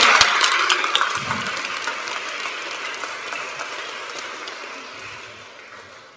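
Audience clapping, loudest at the start and dying away over about five seconds.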